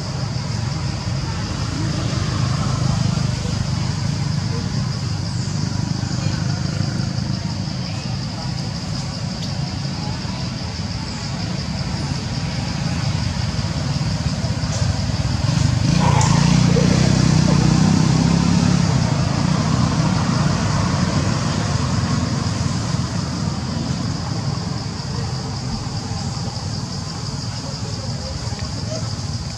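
Steady outdoor background of traffic and indistinct voices, swelling for a few seconds about 16 seconds in, with a steady high-pitched hum above it.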